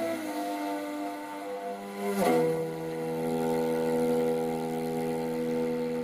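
Morin khuur (Mongolian horsehead fiddle) bowed in long sustained notes, sliding into a new held note about two seconds in.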